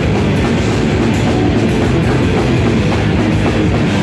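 A rock band playing live and loud, electric guitar over a drum kit, a continuous dense wall of sound.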